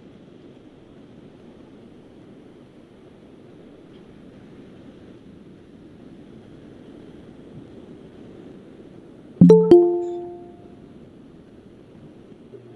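A short two-note electronic chime rings out about nine and a half seconds in and fades over about a second, over a faint steady background hiss. It is a Google Meet alert that people are asking to join the call.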